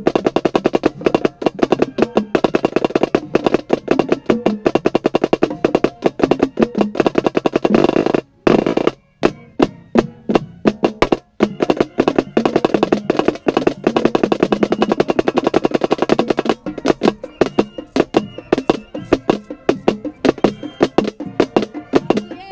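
Marching snare drum with an Evans head played right at the microphone: fast stick strokes and rolls over the drumline and band, with a couple of short breaks about eight and eleven seconds in.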